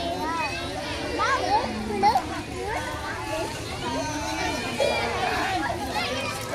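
Children playing in a swimming pool, many high voices shouting and calling over one another, with a louder shout about two seconds in.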